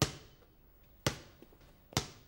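A basketball bouncing on a hard floor: three sharp bounces about a second apart, each with a short echo.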